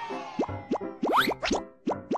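A quick run of about six cartoon pop sound effects, each a short rising blip, over a bright children's jingle. The pops are timed to the letters of an animated logo popping into place.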